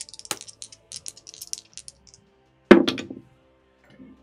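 Polyhedral dice clattering: a rapid run of small clicks and clinks for about two seconds, then one louder knock a little under three seconds in, over quiet background music.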